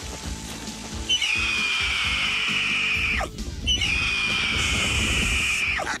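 Dramatic cartoon score, with two long, loud screeching sound effects laid over it, each about two seconds and each sliding slightly down in pitch.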